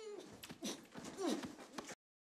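Faint, short whimpering sounds from a person, two brief falling cries, over quiet background sound. The audio cuts to silence near the end.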